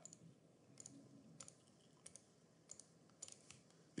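A few faint, scattered computer mouse clicks against near silence, as fills are applied to one shape after another.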